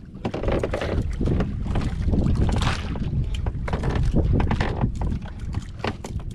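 Wind buffeting the microphone in a small wooden fishing boat at sea, a steady low rumble, with frequent small knocks and rustles from handling gear in the boat.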